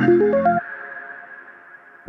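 Electronic music played on a modular synthesizer: a quick rising run of five or six synth notes over a low drone. About half a second in the drone cuts off suddenly and the notes fade away in a reverberant tail.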